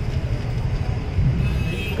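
Steady low rumble of street background noise, like road traffic, in a short pause between a man's sentences.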